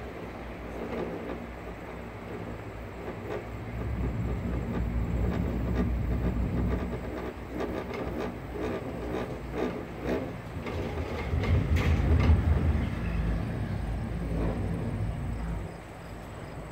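Cabriolet chairlift running, heard from a riding cabin: a rolling mechanical rumble with rattling clatter, swelling to its loudest about twelve seconds in and easing off near the end as the cabin nears a lift tower.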